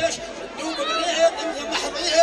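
A man's voice declaiming Amazigh poetry in a chanting delivery through a PA microphone. Held, steady vocal notes sound beneath the pitch-bending recitation.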